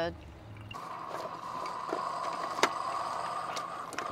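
Keurig single-cup coffee maker brewing, coffee streaming into a ceramic mug. A low hum stops about a second in, leaving a steady hiss of the brew finishing, with one sharp click past the middle.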